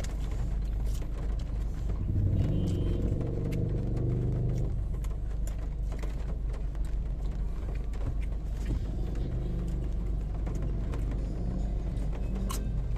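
Steady low rumble inside a car, with a pitched drone that swells for a few seconds about two seconds in. Short clicks and slurps of eating noodle soup with a spoon sound over it.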